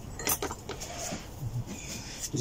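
A few light metallic clinks and knocks as a Honda CB125F one-piece crankshaft with its connecting rod is picked up from among parts and tools on a workbench; the sharpest clink comes about a third of a second in.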